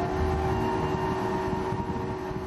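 Motorboat underway at speed: a steady engine drone mixed with rushing water and wind.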